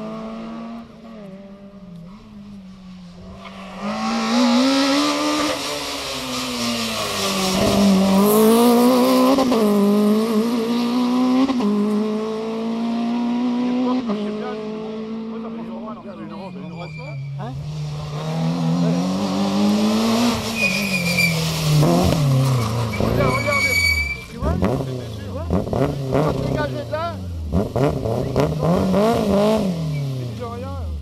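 Rally car engines on a tarmac special stage, revving up and dropping back again and again through gear changes, with brief tyre squeal in the second half.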